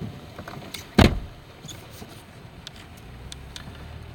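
A single sharp thump inside a vehicle cabin about a second in, with faint scattered ticks of rain on the vehicle afterwards. A low hum starts near the end.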